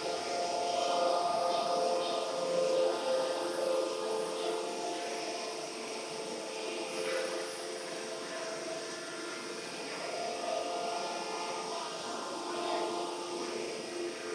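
D53K-3000 ring rolling machine running as it rolls a red-hot ring: a steady mechanical hum with several held tones, a little louder in the first few seconds.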